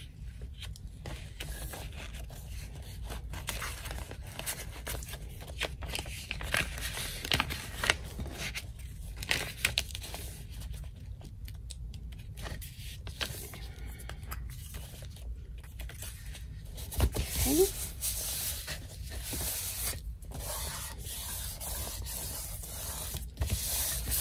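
Paper rustling and rubbing as hands smooth and press glued paper panels flat, with scattered short crinkles and taps from the paper being handled.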